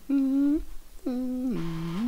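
A person humming a short wordless tune in three held notes, the third one lower than the first two.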